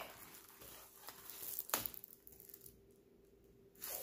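Faint rustling of a rolled diamond-painting canvas and its paper cover being handled and unrolled, with a single light knock about one and a half seconds in.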